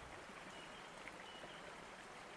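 Faint, steady running-water ambience, like a gently flowing stream, playing softly as a background bed.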